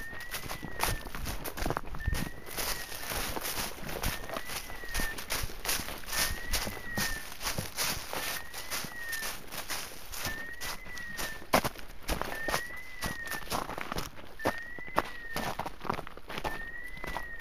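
Hunting dog's beeper collar sounding its point signal: a short electronic tone that rises and falls, repeated evenly about every two seconds, the sign that the dog is standing still on point on a woodcock. Footsteps rustle and crunch through leaf litter and undergrowth, with one sharper snap about eleven seconds in.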